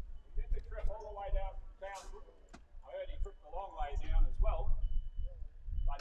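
People talking indistinctly, off the microphone, with a low uneven rumble underneath.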